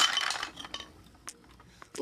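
Small hard toy pieces clattering as a toy truck smashes into a toy building, dying away within about half a second, then a few stray pieces ticking as they settle.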